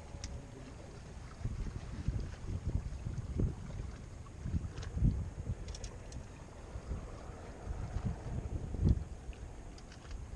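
Wind buffeting the microphone in irregular gusts, a low rumbling that swells and drops, strongest twice: about halfway through and near the end.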